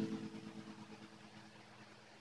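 The last strummed chord of a solo acoustic guitar ringing out and fading away over about a second, leaving near silence.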